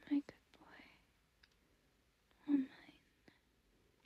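A woman whispering close to the microphone: two short whispered phrases about two and a half seconds apart, with quiet in between.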